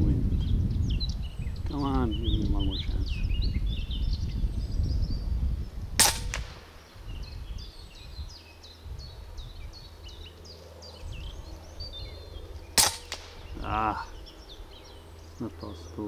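Two shots from a regulated .25 calibre Huben K1 PCP air rifle, each a single sharp crack, about six seconds and thirteen seconds in.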